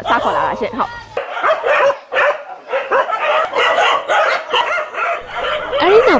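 A group of dogs barking and yipping over one another, with many short overlapping calls; it starts about a second in, after a woman's brief speech.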